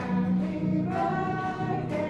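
Several voices singing together over an acoustic guitar, with long held notes.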